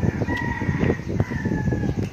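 A rooster crowing once, a long call that dips slightly toward the end, over the crinkling of a paper food wrapper being handled.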